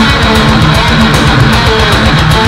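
Heavily distorted electric guitar, a Dean VMNTX through a Peavey 6505 amp head, playing a fast, low heavy metal riff with rapid picking, with fast steady hits running behind it.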